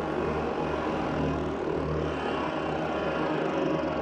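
A beatless breakdown in a psytrance track: a steady, noisy, rushing synth drone over a low sustained bass, with no kick drum.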